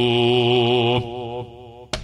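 A man's voice holding one long chanted note with a slight waver, in the drawn-out melodic style of Islamic preaching, breaking off about a second in; a short click near the end.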